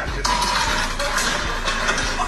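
Music with a noisy background playing from a video clip on a smartphone held up to the microphone.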